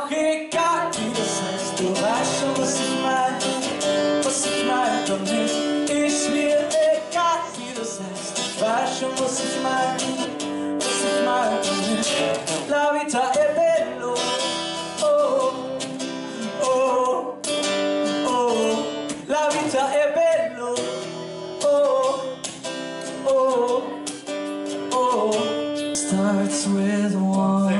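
Acoustic guitar strummed steadily while a man sings a melody over it.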